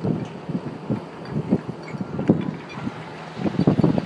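Wind buffeting the phone's microphone in irregular gusts of low rumble, getting choppier and louder near the end.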